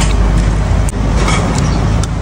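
Steady low rumble of road traffic, a motor vehicle running close by.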